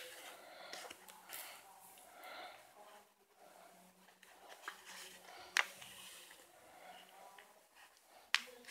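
Quiet handling of a cardboard-backed needle-lace piece as thread is worked through it, with soft rustles and faint ticks, a sharp click at the start and another about five and a half seconds in. Faint voices can be heard in the background.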